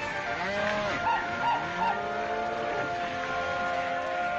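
A herd of cattle bawling and lowing, several long rising-and-falling calls overlapping, over orchestral score music with held notes.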